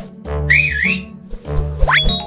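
Cartoon background music with low bass notes, over which a whistle sound effect wavers up and down about half a second in, and then a quick rising whistle glide near the end.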